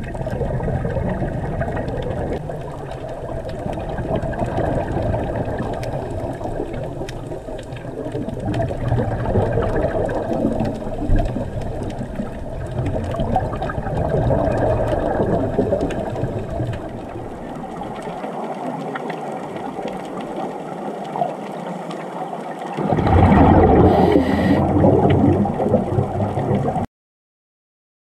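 Muffled underwater ambience picked up by a camera in an underwater housing: a steady low rumble of water noise. It grows louder about 23 seconds in, then cuts off suddenly near the end.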